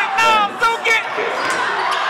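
Teenage boys laughing over the echoing noise of a school gym, with a basketball bouncing on the hardwood court during play.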